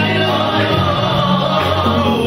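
Live gospel music: a lead singer and backing singers singing together over a band with a steady bass line.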